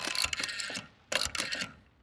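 Rotary telephone dial being turned and spinning back with rapid clicking, twice.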